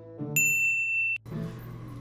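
A single high, steady electronic tone, just under a second long, that starts and stops abruptly, over background music.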